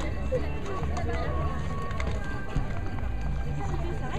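Indistinct voices over a steady low rumble, with faint music.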